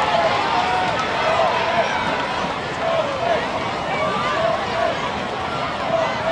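Football crowd: many spectators' voices talking and calling out at once, steady throughout.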